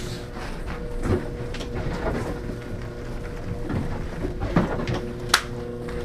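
Drummed pine marten pelts being handled and brushed at a work table. A few light knocks and scrapes sound, with the sharpest click just past five seconds in, over a steady hum.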